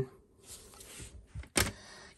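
Hands handling hard plastic PSA graded-card cases: a faint sliding rustle, then a single light clack about one and a half seconds in.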